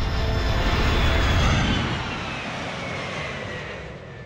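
A swelling whoosh like an aircraft flying past, loudest about a second in and then fading away, with a faint falling whine as it passes.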